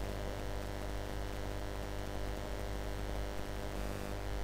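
Steady low electrical hum with a faint hiss underneath, holding at an even level throughout.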